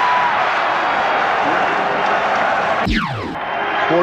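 Arena crowd cheering for a just-made three-pointer under a radio basketball broadcast, with a quick sound sweeping steeply down in pitch about three seconds in.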